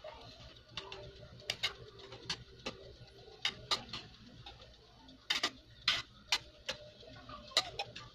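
Thick tomato sauce simmering in an aluminium wok, its bubbles bursting in irregular sharp pops, a few a second, over a faint steady hum.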